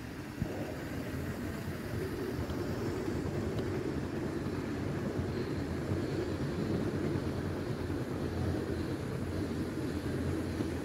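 LEGO freight train rolling past close by on plastic track: a steady rumble of plastic wheels and wagons, a little louder from about two seconds in. A single sharp knock comes about half a second in.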